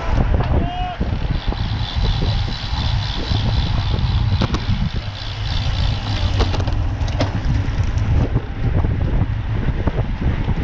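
Wind buffeting the microphone of a camera riding along on a road bike in a group of cyclists, a steady low rumble. A brief shout comes in the first second, and a few light clicks sound later on.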